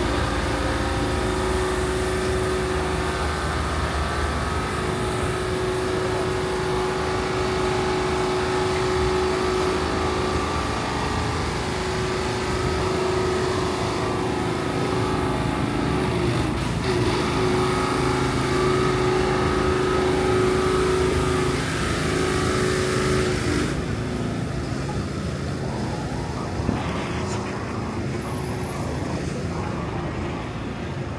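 City street traffic with a steady, pitched engine hum from a nearby motor vehicle; the hum stops about 24 seconds in, leaving the general traffic noise.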